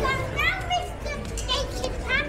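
A young child's high-pitched voice calling out several times in short, upward-rising cries, over the general chatter and bustle of a crowded pedestrian street.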